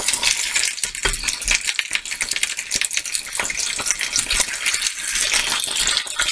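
Raw chicken pieces sizzling and crackling in hot vegetable oil in a frying pan as they go in to brown, with a wooden spoon pushing them off a plate.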